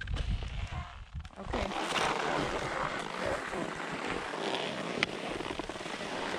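Skis sliding and scraping over packed snow while skiing downhill, a steady rushing hiss, with wind rumbling on the microphone during the first second or so.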